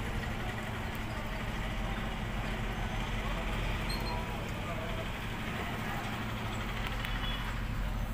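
Steady outdoor background noise with a continuous low hum like an engine running, and faint voices mixed in.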